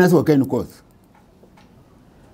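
A man's voice speaking for about the first half second, then a pause with only faint room tone for the rest.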